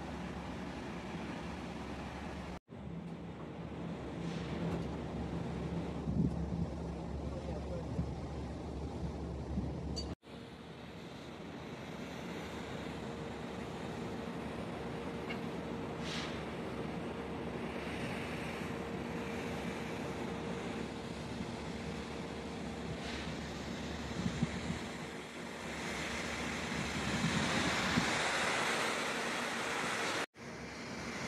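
Wind on the microphone over a steady rush of water spray and a low machinery hum on an offshore rig, broken twice by abrupt cuts. The rushing swells near the end, with the well-test burner alight and pouring out black smoke.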